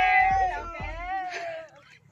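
Several high-pitched voices calling out long, drawn-out goodbyes together, fading away shortly before the end.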